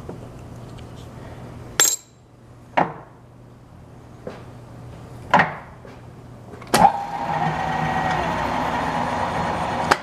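Drill press running with a low hum, then switched off with a sharp click about two seconds in. A few separate metallic clunks follow as the speed range is changed, then another loud click and the machine starts again with a louder, steady whine in high range.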